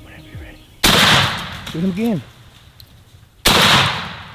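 Two shotgun blasts about two and a half seconds apart, the first about a second in and the second near the end, each trailing off in a decaying tail; the second is a Winchester Long Beard XR turkey load.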